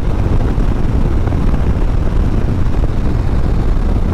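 A 2021 Harley-Davidson Street Bob's Milwaukee-Eight 114 V-twin running steadily at highway cruising speed, a deep, even rumble mixed with wind rush on the handlebar-mounted microphone.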